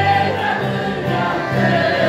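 Family choir of adults and children singing a Christian hymn together, accompanied by accordions playing held chords.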